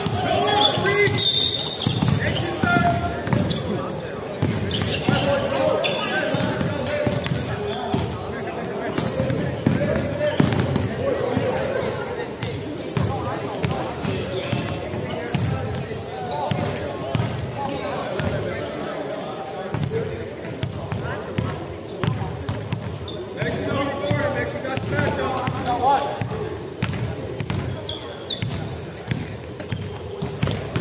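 A basketball bouncing repeatedly on a hardwood gym floor, mixed with indistinct voices of players and onlookers calling out.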